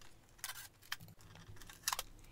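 Blue protective tape being peeled off a new Epson EcoTank printer's plastic casing: a few short rips with a small click between them.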